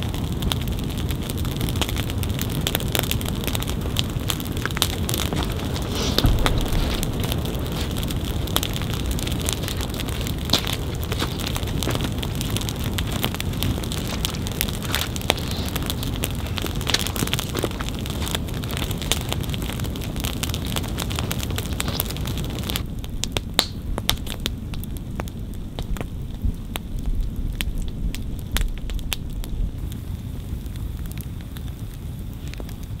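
A large open campfire of piled dry branches burning, with a dense run of sharp crackles and pops. About three-quarters of the way through, the sound thins to a quieter fire with fewer, scattered pops.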